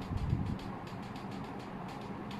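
Short, faint scratching strokes of a coloured pencil tip on a plastic ping pong ball, over a steady low background hum.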